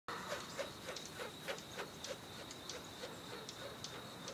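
Animal-like calls: a steady high-pitched trill with short calls repeating about three times a second.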